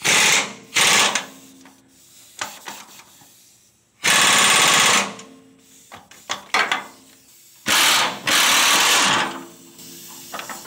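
Pneumatic impact wrench hammering in five short bursts, the longest about a second, working a stubborn frame bolt loose.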